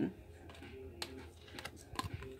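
A few soft clicks and taps of oracle cards being handled and set down on a table, over quiet room tone.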